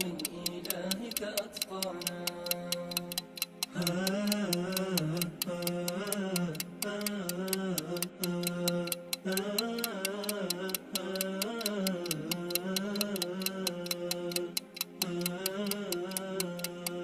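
Clock ticking sound effect in a steady rapid rhythm, marking a countdown, over a wordless sung vocal melody.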